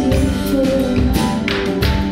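Live band playing through a break in the singing: mandolin strummed over bass and keys, with drums and percussion keeping a steady beat.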